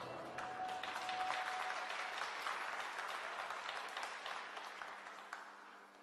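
Audience applauding as the skating music comes to an end. The last notes of the music die out in the first second or so, and the clapping fades away over about five seconds.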